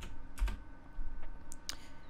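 Computer keyboard typing: a handful of separate keystrokes as a new name is typed in.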